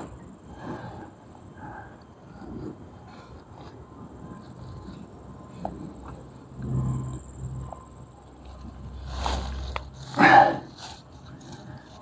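Faint rustling of dry fallen leaves from a monitor lizard moving through leaf litter, with a short louder burst about ten seconds in.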